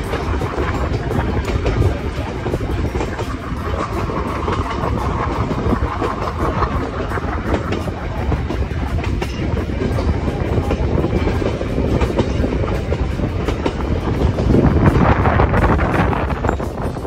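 Passenger train running along the rails: a steady rumble and rattle of wheels and carriages with many small clicks. It grows louder near the end.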